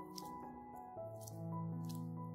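Gloved hands kneading soft yeast dough, making two short squishes, one just after the start and one near the end, over background music of sustained notes.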